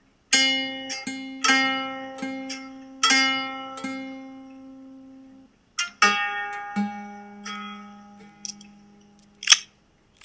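Nylon-string classical guitar plucked one note at a time, each note ringing out: about six plucks, a short break just past halfway, then about four more that fade. A sharp knock near the end is the loudest sound.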